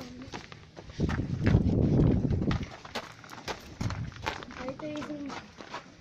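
Footsteps scuffing and clicking on a rocky path, irregular and uneven. From about a second in, a loud low rumble on the microphone lasts for about a second and a half.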